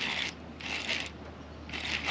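Baitcasting reel being cranked in to retrieve line on a hooked bass, in short scratchy bursts about once a second, over a steady low hum.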